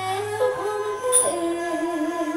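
Music with a voice singing long held notes, the pitch wavering on the last note, and a sharp bright strike a little past the first second.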